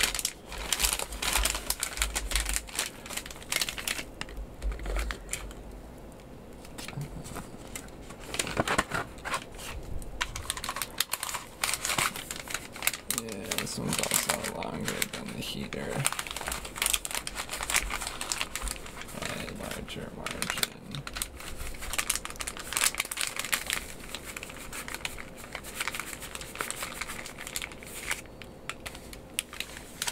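Crinkling and rustling of MRE foil-laminate pouches and a cardboard ration carton as they are handled, with many sharp crackles.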